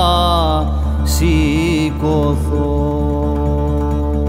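Cretan rizitiko folk song: a man's sung note, wavering in pitch, ends under a second in over a steady low drone. A new long held note begins about halfway through.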